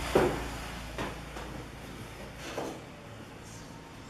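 Pine wood pieces and a clamp being handled on a workbench: one sharp wooden knock just after the start, a softer knock about a second later and a fainter one past the halfway mark, over a low steady hum that fades about halfway through.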